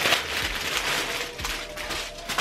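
Clear plastic bag crinkling and crackling as it is pulled open and a T-shirt is drawn out of it. The crinkling is loudest at first and thins out towards the end.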